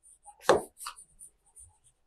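Writing on an interactive board: one short, louder tap about half a second in, then a few faint ticks as the writing goes on.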